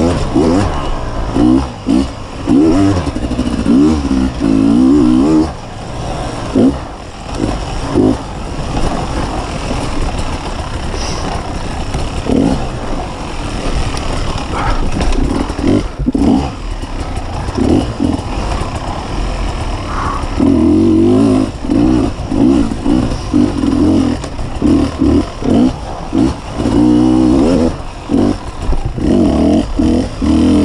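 2015 Beta 250RR two-stroke dirt bike engine revving in short bursts that rise and drop again and again as the throttle is opened and shut, with brief cuts between them.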